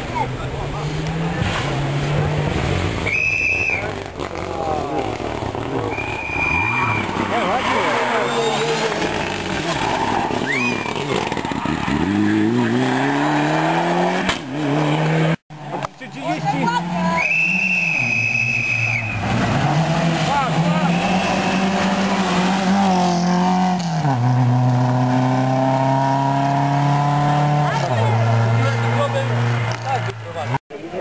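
Rally cars driven flat out on a stage, their engines revving hard, with pitch climbing and dropping as they change gear and lift. Tyres squeal briefly three times through the corners.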